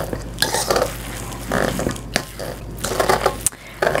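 A big fork stirring ground-beef meatloaf mix in a stainless steel mixing bowl: irregular scraping strokes with sharp clicks of metal on metal.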